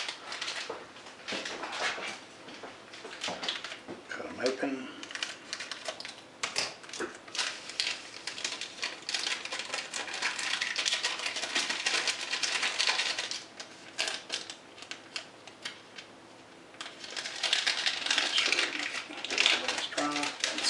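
Small paper yeast packets being handled, shaken and tapped out over a bowl of flour: rapid papery crinkling and ticking, with a denser burst of rustling near the end.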